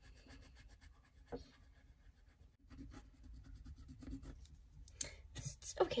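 Colored pencil scratching faintly on drawing paper in rapid, even back-and-forth strokes, shading in a small area, with a brief break near the middle.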